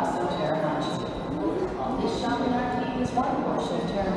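Voices of passers-by talking in a covered shopping arcade, with footsteps on the tiled floor.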